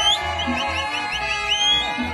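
Mariachi band playing live: a high melody line rises at the start and then runs through a quick series of short upward-sliding notes, over a steady pulsing bass.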